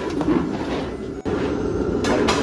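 Steady noise of a 1.5-metre wok of pork frying, stirred with a long wooden paddle. The sound drops out for an instant just past a second in, then carries on.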